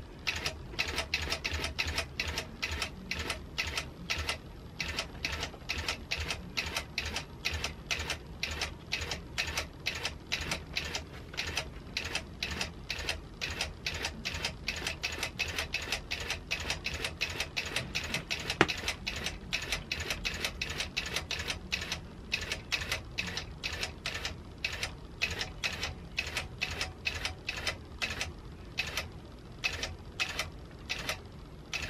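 Longarm quilting machine stitching long basting stitches, a steady run of needle clicks at about three to four a second over a low motor hum.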